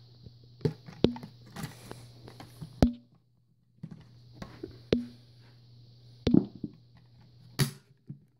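Hard plastic clicks and knocks of a Dyson DC25 upright vacuum's clear bin and cyclone assembly being handled and taken apart, with the machine switched off. There are a handful of separate sharp knocks, spread through.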